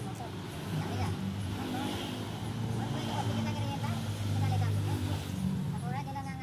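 A motor vehicle engine running nearby, a low steady hum that swells to its loudest about four to five seconds in, with voices faintly in the background.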